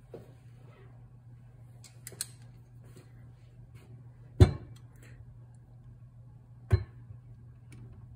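Workshop handling noises: a few sharp knocks as the metal carburetor body is picked up, turned and set against the wooden bench, the loudest about halfway through and another near the end, over a steady low hum.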